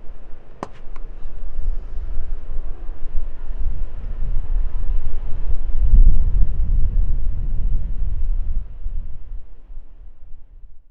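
A few sharp clicks about half a second in, fitting a plastic shaker bottle's lid being handled, then a low rumble that swells to its loudest about six seconds in and fades away at the end.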